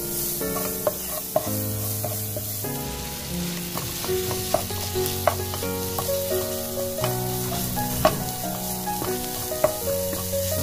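Onion and then ground chicken sizzling in a non-stick wok while a metal spatula stirs and scrapes, with sharp taps of the spatula against the pan every second or so. Light background music with held notes plays underneath.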